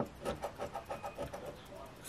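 A large coin scraping the coating off a scratch-off lottery ticket in quick short strokes, about six a second.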